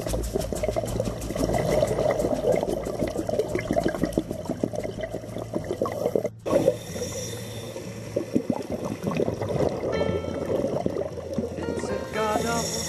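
Underwater sound recorded through a camera housing: a dense crackle of clicks and bubbling water, with a brief dropout about six seconds in.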